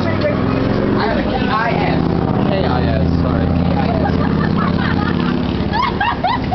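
A vehicle engine running steadily close by, under indistinct talking.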